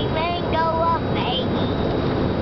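Steady road and engine rumble inside a moving car's cabin, with a young child's high voice giving two short held sung notes in the first second.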